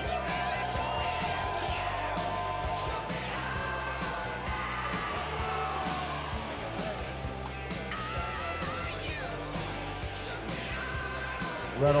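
Background rock music with guitar playing in the arena, with crowd voices and shouts beneath.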